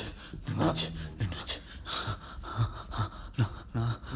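A man panting and gasping in short, irregular breaths with voiced catches, several to the second.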